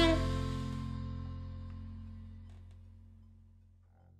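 A Dixieland-style swing band's final chord ringing out and dying away evenly to silence over about three and a half seconds, with the low double-bass notes lasting longest.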